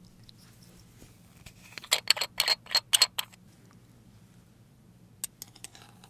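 Small glass jar of edible gold flakes handled close to the microphone: a quick run of sharp clicks and taps, then a few lighter clicks near the end as the lid is worked.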